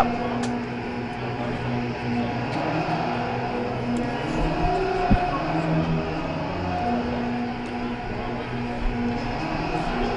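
Ice rink ambience during a stoppage in play: a steady low hum with faint, distant voices on the ice, and a single sharp knock about five seconds in.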